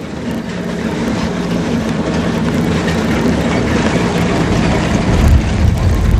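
Dump truck engine and tyres on a gravel road, the noise building steadily and loudest near the end as the truck draws close.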